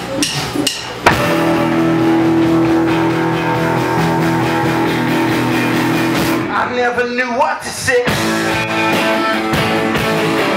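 Live rock band of electric guitars, keyboard and drums starting a song with a sudden loud entry about a second in, after a few scattered knocks. The band plays held chords, drops them for a short busier break around seven seconds in, then comes back in.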